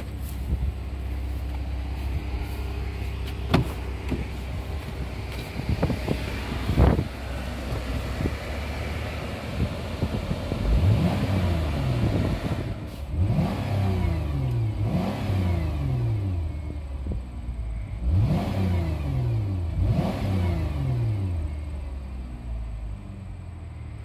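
2011 Chrysler Town & Country's 3.6-litre V6 idling in neutral, then revved about five times from about ten seconds in, each rev climbing quickly and sinking back to idle. Two sharp knocks come earlier, a few seconds in.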